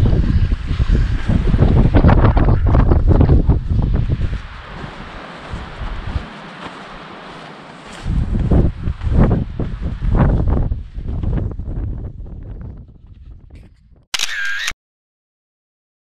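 Wind buffeting the microphone in low rumbling gusts, strong in the first four seconds and again from about eight to eleven seconds, then dying away. Near the end, a single short SLR camera shutter click.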